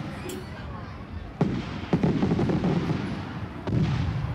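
Three loud bangs from festival gunpowder charges fired from short metal pipe mortars: two about a second and a half and two seconds in, a third near the end. Each is followed by a rolling low rumble.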